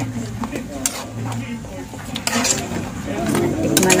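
A metal ladle stirring pork adobo and potatoes in a metal pan, with scraping and several sharp clinks against the pan, over a faint simmer on low heat.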